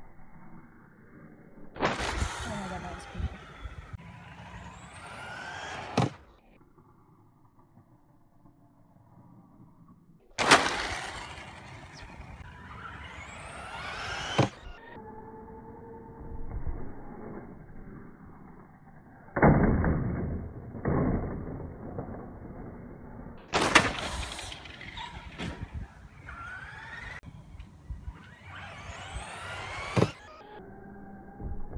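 Electric radio-controlled trucks accelerating, their motors whining and rising in pitch in three spells that cut off abruptly, with sharp knocks from jumps and landings. In between, the sound is duller and more muffled.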